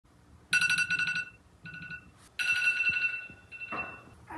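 Smartphone alarm tone going off in three bursts: a high electronic ring with a fast flutter. Near the end there is a brief burst of noise.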